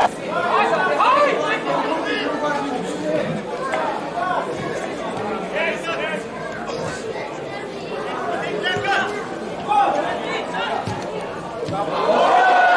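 Several men's voices shouting and calling to one another across the pitch during open play in a football match, overlapping and unintelligible.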